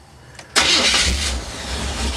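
A 1977 Chevy pickup's small-block V8 cranks and fires about half a second in, then keeps running with a pulsing low rumble. It has no choke and is started after pumping the gas pedal a couple of times to prime it.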